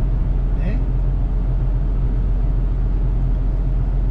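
Steady low engine drone and road noise inside a truck's cab at highway cruising speed.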